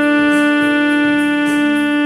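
Alto saxophone holding one long, steady note over a quieter accompaniment.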